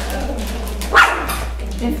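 Foil pouches crinkling and rustling as they are handled and opened, with a short, high, loud cry, a yelp or shriek of a laugh, about a second in.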